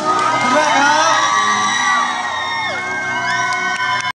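Audience of fans screaming and cheering, many high voices overlapping and rising and falling.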